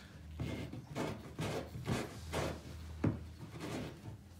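Hand twisting and working a stuck cork in the neck of a wine bottle: a run of short rubbing, scraping strokes, about two a second.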